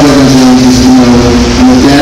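A voice over the PA holding a long, level note with slight wobbles in pitch.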